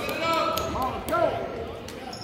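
A basketball being dribbled on a hardwood gym floor, with a few sharp bounces, among the voices of players and spectators echoing in the gym.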